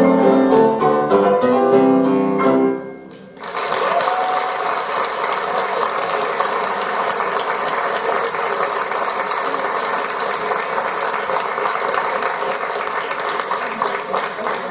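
A piano plays its last notes, which die away about three seconds in. Steady audience applause follows and runs on.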